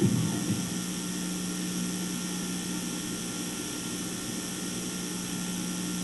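Steady electrical buzz and hiss of a murky VHS tape recording, with no programme sound over it.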